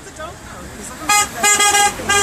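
A vehicle horn sounds twice, starting about a second in: a short toot, then a longer blast of about half a second.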